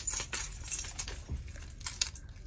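Keys and a small keychain jangling and clinking as someone rummages for them: a quick run of light metallic clicks, with one sharper click near the end.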